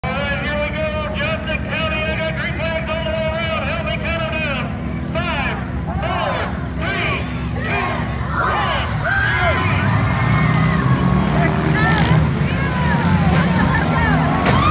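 Stripped-down demolition derby cars with their engines idling together as a steady low rumble, which grows louder about two-thirds of the way in as some are revved, with voices over the top.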